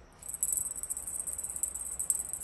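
A cat toy jingling and rattling quickly and continuously as a cat paws at it and bites it. The sound is high and thin, breaks off for a moment and resumes about a third of a second in.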